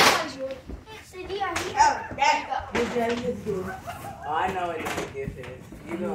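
Children's voices talking and calling out over one another, not forming clear words, with a sharp knock right at the start and a few lighter knocks as gift boxes are handled.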